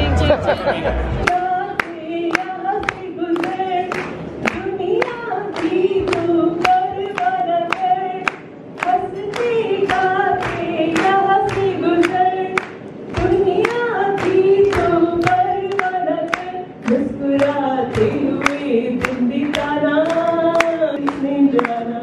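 A group of people singing a song together, with hand-clapping in time at about two claps a second.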